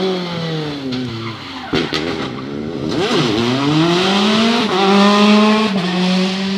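Peugeot 208 T16 R5 rally car's turbocharged four-cylinder engine heard as the car drives away. The engine note drops, a few sharp cracks come a little under two seconds in, then it revs up again, with a gear change near the end.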